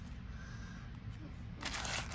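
Foil trading-card pack wrapper crinkling in the hands, quietly at first and with a brief louder crinkle near the end.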